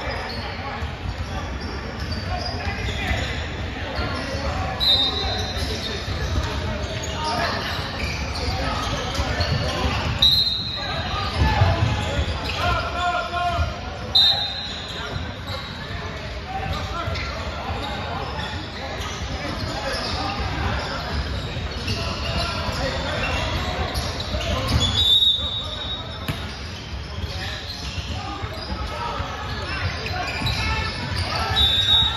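Basketball game in a large echoing gym: a ball bouncing on the hardwood floor amid the steady chatter and shouts of players and spectators, with a few short high squeaks.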